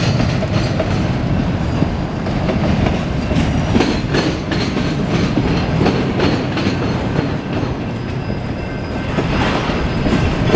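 CSX freight train's autorack cars rolling past: a steady rumble of steel wheels on rail, with intermittent clacks as the wheels pass over rail joints.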